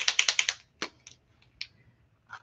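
A paint marker being shaken, its mixing ball rattling inside the barrel: a fast run of clicks for about half a second at the start, then two or three single clicks.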